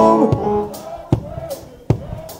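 Live gospel band in a pause between sung phrases: a chord on keyboard and guitar dies away, with a few sharp drum hits.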